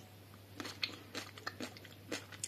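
A person chewing food with several faint, irregular crunches.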